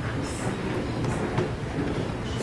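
Low, steady rumbling handling noise from a handheld camera being carried on the move, with a few brief rustles and a sharp click.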